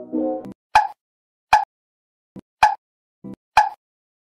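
Background music stops about half a second in. It is followed by a series of short, sharp pop sound effects, four louder pops roughly a second apart with fainter clicks between them.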